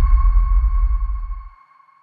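The tail of a logo intro sound effect: a held, ringing electronic tone over a deep rumble, both fading out about a second and a half in.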